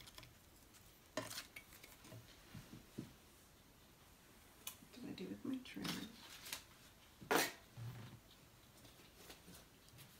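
Handling sounds at a craft table: paper rustling and small objects tapping and clicking on the mat. A louder knock comes about seven seconds in.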